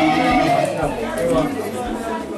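Voices in a crowded room: a long held vocal note trails off about half a second in, giving way to several people talking over one another.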